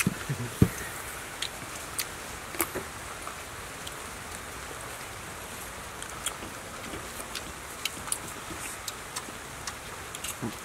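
Eating noises: scattered small clicks and smacks of chewing and of handling food, over a steady background hiss. There is one stronger thump about half a second in.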